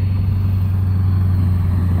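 Diesel pickup truck engine running with a steady low drone.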